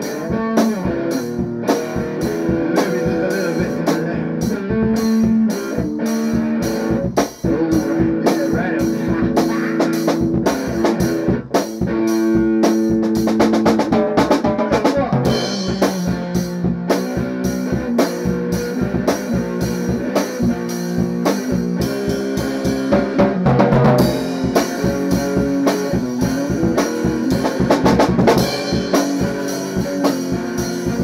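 Guitar playing rock music over a steady drum beat, with no singing.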